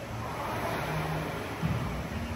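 Air rowing machine's fan flywheel whirring as it is pulled through rowing strokes, with a single knock about one and a half seconds in.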